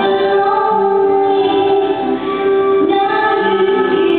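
Music with a singing voice holding long, slow notes, changing pitch only every second or so.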